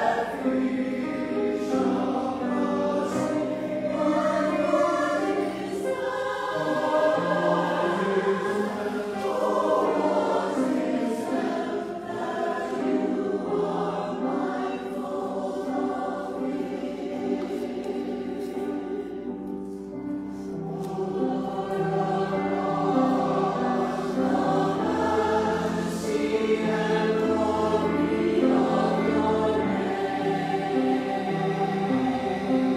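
Mixed church choir singing in parts, with long held notes.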